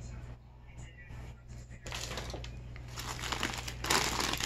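Crinkly plastic packaging being handled and pulled out of a bag. It starts about halfway through and grows busier toward the end, over a low steady hum.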